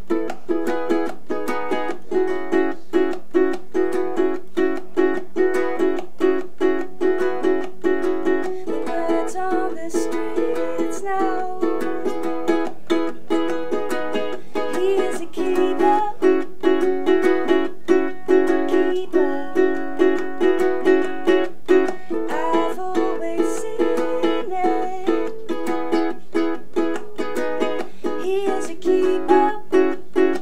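Ukulele strummed in a steady rhythm, with a woman's voice singing over it in places.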